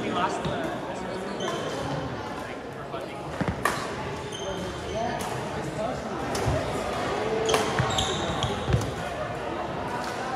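Badminton rackets striking a shuttlecock during a rally: a few sharp hits some seconds apart, echoing in a large gym.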